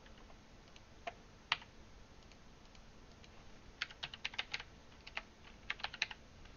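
Quiet computer mouse clicks and keyboard typing: two single clicks in the first second and a half, then a quick run of keystrokes about four seconds in and a few more near the end.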